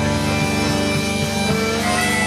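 Live band music, an instrumental passage without singing: acoustic guitar with held melody notes over a steady beat.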